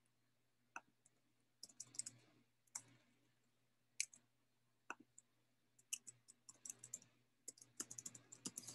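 Faint, irregular clicking of a computer keyboard and mouse: scattered single clicks and short runs of quick taps, with quiet gaps between.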